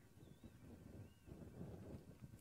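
Near silence, with only a faint low rumble in the background.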